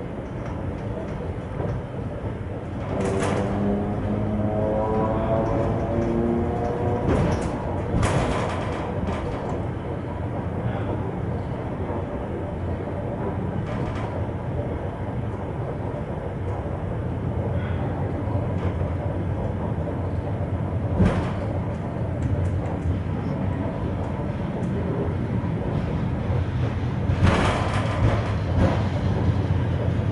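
Inside an ER2K electric multiple unit's passenger car: a steady low hum and rumble of the running train, with a rising whine a few seconds in and again at the very end. Scattered sharp clicks and knocks sound through it.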